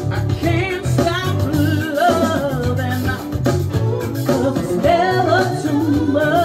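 A live band playing a song, with a woman's lead vocal sung with a wavering vibrato over electric bass, keyboards and a steady beat.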